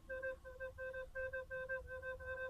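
Plastic soprano recorder playing a quick run of short, separately tongued notes, all on one pitch: a repeated C (do).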